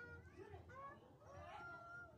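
Faint animal calls in the background: a few short gliding cries, then one longer, steadier call in the second half.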